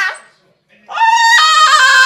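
French bulldog howling in long, sing-song notes: the end of one held note, a short pause, then a second long note starting about a second in that steps up in pitch partway through.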